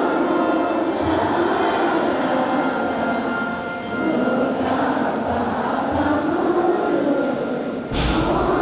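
Many voices of a kneeling congregation praying aloud at the same time, blending into a steady, loud murmur with no single voice standing out.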